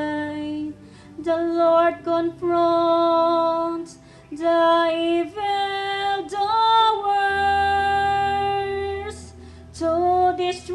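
A woman sings the responsorial psalm in slow, long-held notes with short breaks between phrases, over soft sustained accompaniment chords.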